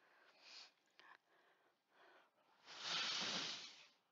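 A person blowing one long puff of breath at a paper pinwheel, starting about three seconds in and lasting about a second.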